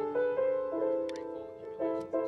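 Piano playing a slow, sparse melodic phrase: single notes and small chords struck a few at a time, each fading before the next.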